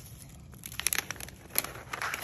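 Crinkling and crackling of a plastic toy package being handled, a scatter of sharp crackles and clicks starting about half a second in.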